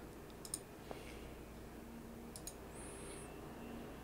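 A few faint computer mouse clicks, scattered and irregular, over quiet room tone.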